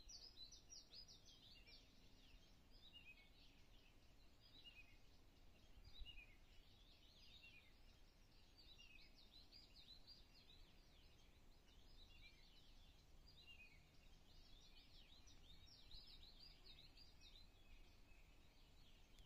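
Faint birdsong: quick runs of short, high, falling chirps, repeating every few seconds over a quiet outdoor background.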